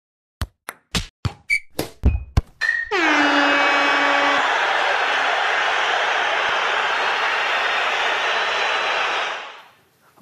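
Intro stinger for a show: a quick run of sharp percussive hits, then a loud sustained chord over a crash-like wash that rings for about six seconds and fades out near the end.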